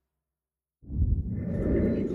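Dead silence for the first part, then about a second in the ferry cabin's background noise cuts in: a steady low hum with a muffled rustling over it.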